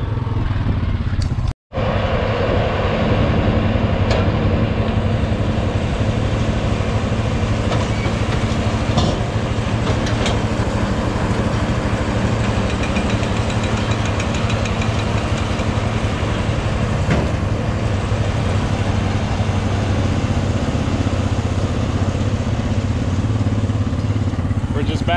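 A vehicle engine running steadily, with a short break in the sound about one and a half seconds in.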